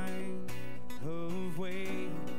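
Live worship band playing a slow song: voices singing over acoustic guitar and keyboard, holding one note and then starting a new line with a rising pitch about a second in.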